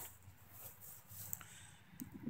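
Near silence, broken by a few faint soft scuffs and one light click a little past halfway through.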